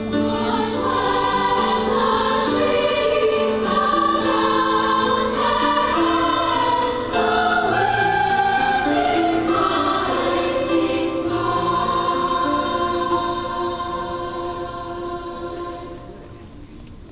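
Youth choir singing in several parts, sustained sung lines moving together; the sound tapers off over the last few seconds as a phrase dies away.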